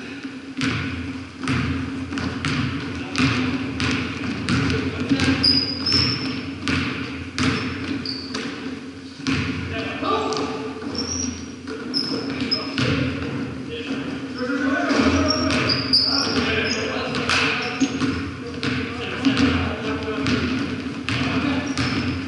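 Basketball bouncing on a hardwood gym floor during play, a run of bounces roughly every half second to a second, with short high sneaker squeaks on the wood, echoing in the large gym over a steady low hum.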